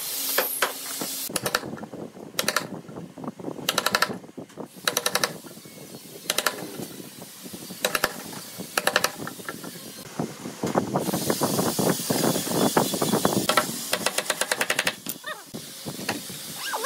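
Woodworking sounds in short takes. A DeWalt cordless drill drives screws into a hinge on a wooden frame in several short bursts. Then a hammer strikes a chisel cutting into a wooden board, the blows often coming in pairs, and a louder, busier stretch of noise follows near the end.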